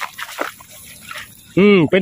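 A plastic mesh basket scooped through shallow water among grass: a few short splashes and swishes, then a man's voice hums "mmm" near the end.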